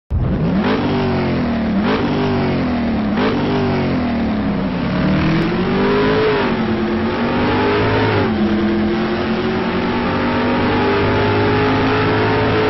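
An engine revving: three quick blips, then two slower climbs and drops in pitch, settling into a steady drone.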